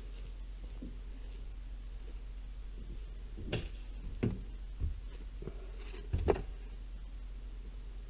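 Handling sounds of a possum carcass being turned and cut with a knife on a board: four or five short knocks and scrapes, the loudest a little after six seconds in, over a steady low hum.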